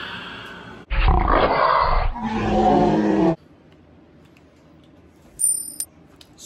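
A man's long, loud burp after a drink from a mug. It opens rough and rumbling about a second in, turns into a lower pitched drone, and cuts off suddenly a little past three seconds.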